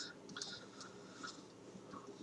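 Very quiet room tone with a few faint, soft clicks scattered through it.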